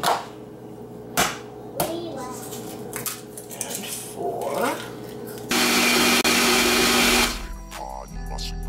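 A few sharp taps of eggs being cracked on the glass blender jar, then the countertop blender runs loudly for about two seconds, mixing the liquid flan batter, and stops.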